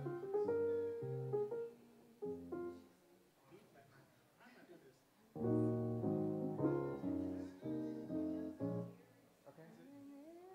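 Piano-sound keyboard playing short chord phrases, with a quieter gap of a couple of seconds before a louder run of full chords.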